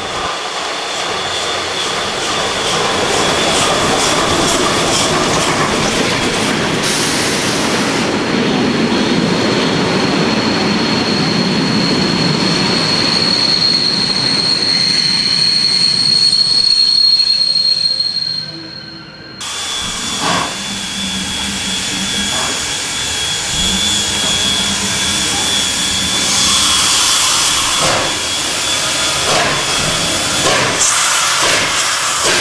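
Steam-hauled passenger train with a 141 R locomotive rolling through a station: the coaches' wheels rumble and clatter past with a steady high wheel squeal, loudest as the coaches go by about two-thirds of the way through. After an abrupt cut the locomotive stands at a platform, with steam hissing near the end.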